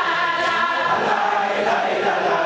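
A large group of voices chanting together in unison: a devotional chant sung by a crowd.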